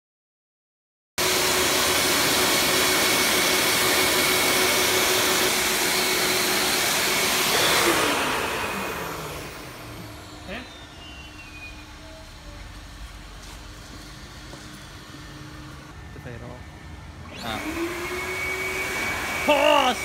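A self-serve car wash's handheld air-blower dryer running loud with a steady whine, then winding down with a falling pitch about eight seconds in. Near the end it spins back up with a rising pitch.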